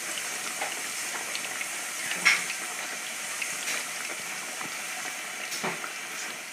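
Potato chunks deep-frying in a pot of hot oil: a steady sizzle with scattered crackles, one sharper pop a little past two seconds in.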